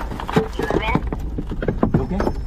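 Short breathy grunts and exclamations from the vehicle's occupants, mixed with scattered knocks and rattles inside the cabin, over a low steady rumble, in the moments just after the crash.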